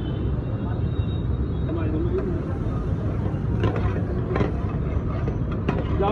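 Steady low rumble of a busy street-food stall, with a brief murmur of voices about two seconds in. In the second half a steel spatula taps and scrapes against the pan several times.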